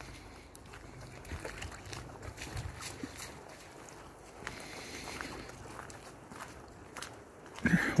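Footsteps on a gravel track, faint and irregular.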